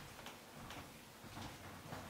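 Faint footsteps, a soft tick of a step roughly every half second as a man walks.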